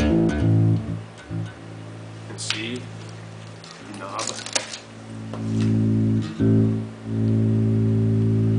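Alembic Essence four-string bass with active pickups, played through an amplifier while its volume knob is worked. Sustained low notes drop to a quiet level about a second in and come back up loud about five seconds in, with a few faint clicks of the hand on the controls in the quiet part.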